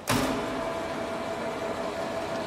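A lathe switched on: a sudden start, then its electric motor and spindle running with a steady hum and a constant whine, turning without cutting yet.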